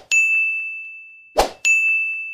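End-screen button sound effects: twice, a short hit followed by a bright ding that rings out and fades, the second pair about a second and a half in.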